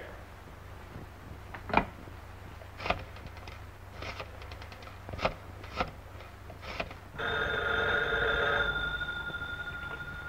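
A series of sharp clicks as a telephone is picked up and dialed, then a telephone bell rings about seven seconds in, loud for a second or two and then fading.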